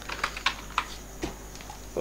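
Computer keyboard keystrokes: a few separate key clicks, mostly in the first second, as a short bit of code is typed.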